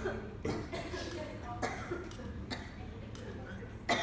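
Low, indistinct talk from people in a room, with a brief sharp sound just before the end.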